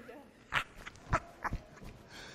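Laughter: a few short, breathy bursts over about a second, after a brief 'ah'.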